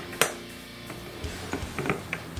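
A sharp metal clink as the steel crank of a router-table lift is seated in the insert plate, ringing on briefly. A few light clicks follow near the end as the crank is turned to lower the router bit.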